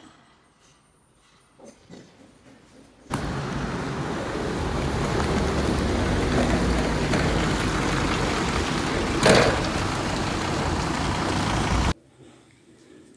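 Quiet room with a few faint knocks, then a sudden cut to loud, steady outdoor traffic noise with a deep rumble and one brief louder rush about three quarters through.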